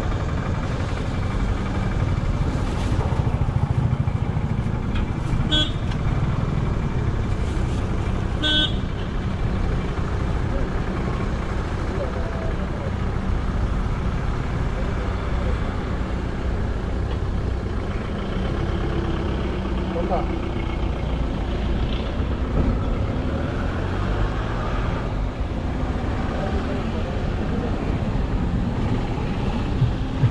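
Road traffic passing with a steady low engine rumble, and two short vehicle horn toots about five and a half and eight and a half seconds in.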